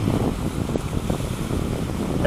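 Wind buffeting the microphone: an uneven rumble with no steady tone in it.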